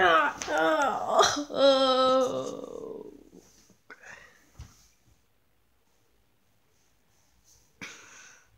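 A boy's wordless vocal noises for about three seconds, ending in a long held groan that falls in pitch and fades out, a mock dying sound; then near silence with a couple of faint clicks.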